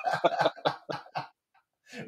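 A man's short chuckle, a handful of quick breathy bursts right after a spoken word, then about half a second of dead silence near the end.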